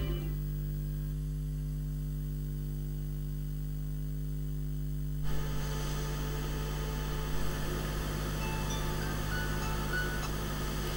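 Steady electrical mains hum, a low drone with a stack of evenly spaced overtones, on the audio line. About five seconds in, room noise opens up beneath it, with a couple of small knocks.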